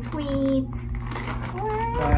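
A woman's voice in high-pitched, babbling baby talk without clear words, over a steady low hum.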